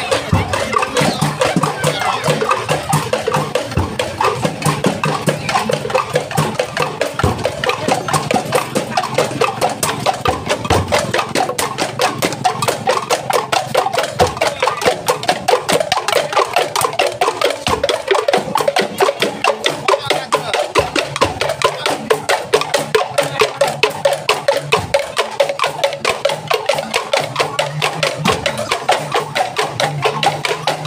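Thethek, Banyuwangi bamboo kentongan percussion, played by a marching group: many wooden knocks in a fast, steady beat, with some lower sustained tones beneath.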